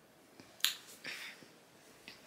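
A single sharp finger snap about two thirds of a second in, followed by a brief soft hiss.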